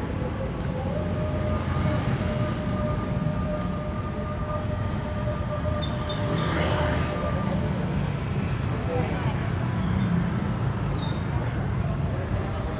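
Roadside street traffic: a steady low rumble of cars and motorbikes, with a steady engine hum through the first half or so.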